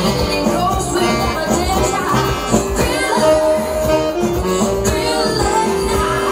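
Lively music with a steady beat, played on an electronic keyboard.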